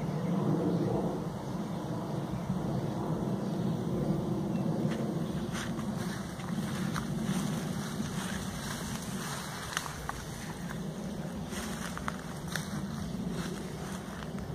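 Steady low wind rumble on the microphone, with scattered light clicks and crackles in the second half.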